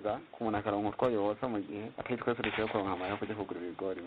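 A person speaking continuously: speech from a radio news report.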